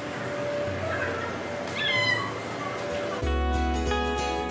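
Guitar background music cuts in sharply about three seconds in. Before it there is a noisy ambience with a short, high, falling cry about two seconds in.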